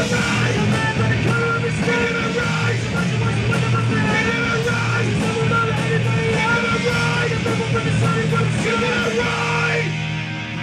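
Punk band playing live, with distorted electric guitars and a drum kit, loud and dense; the sound dulls suddenly shortly before the end.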